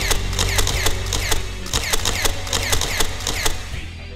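Soundtrack music in a sparse stretch: quick, ratchet-like ticking clicks, about four or five a second, over a steady low bass drone.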